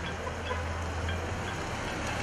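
Street ambience: a steady low traffic hum over a general outdoor noise, with a few faint ticks.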